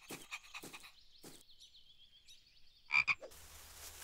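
Cartoon frog croaking sound effect: faint croaks, then two short, louder croaks about three seconds in, followed by a soft steady hiss.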